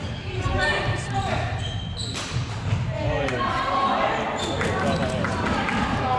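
Indoor floorball game: players' shouts and calls mixed with sharp clicks of plastic sticks and ball, echoing in a large sports hall.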